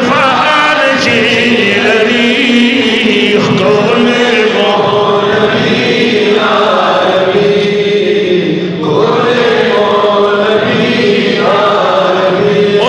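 Men singing a Pashto naat (devotional praise song) without instruments, in long drawn-out phrases with a wavering vibrato, the notes held for a few seconds at a time with short breaks between.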